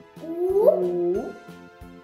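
Background children's music with a steady beat. About a quarter of a second in, a drawn-out, upward-sliding vocal call rides over it for about a second.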